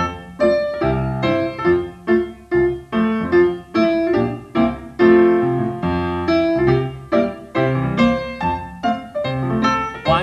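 Solo piano playing ballet-class accompaniment for a barre exercise: evenly spaced chords and melody notes struck to a steady, exact tempo.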